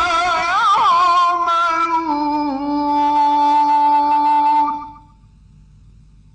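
A male Quran reciter chants a verse melodically, running through a quick ornamented turn before settling on one long held note that stops about five seconds in.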